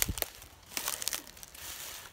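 Dry grass rustling and crackling underfoot, a run of irregular crisp clicks and crinkles that is busiest a little under a second in.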